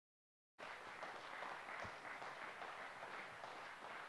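Faint applause from a congregation, starting about half a second in after dead silence.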